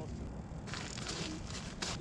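Boots crunching on crusted snow and winter clothing rustling as a person rises from a crouch on snowy ice. The noise starts a little way in and sharpens into a scrape near the end.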